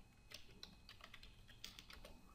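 Faint computer keyboard typing: a quick run of about a dozen keystrokes as a password is typed in at a login screen.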